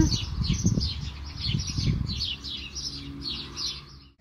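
Small songbirds chirping: a quick series of short, falling chirps, several a second, repeated steadily. Low muffled sounds lie underneath in the first two seconds.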